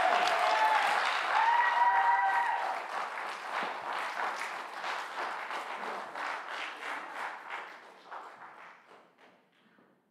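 Congregation applauding, with a few long cheers in the first three seconds; the clapping thins out and dies away near the end.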